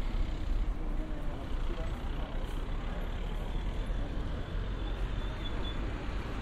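Outdoor street ambience: a steady low rumble of road traffic, with faint voices.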